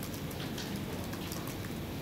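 Steady background noise of a large room, with a few faint scattered crackles.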